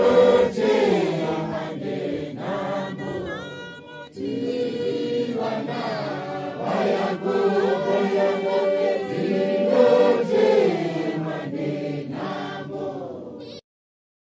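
A Johane Masowe congregation singing a Shona hymn, many voices together. The singing cuts off suddenly near the end.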